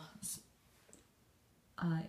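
Speech trailing off, then a pause of quiet room tone with one faint click, and the voice resumes with 'uh' near the end.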